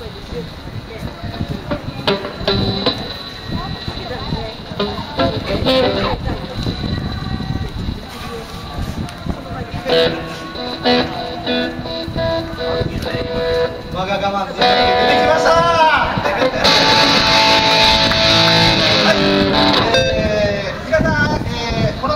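Electric guitar played through stage amplifiers by a live band, irregular at first, then chords and bent notes, with a louder held passage near the end; people's voices around it.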